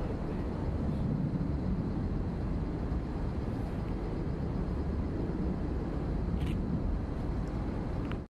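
Steady low rumble of vehicle noise outdoors, with a faint click about six and a half seconds in.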